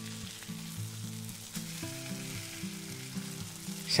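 Raw potato chunks sizzling and being stirred into hot olive oil with softened onion and green pepper in a stainless steel pot. Soft background music of held notes plays underneath.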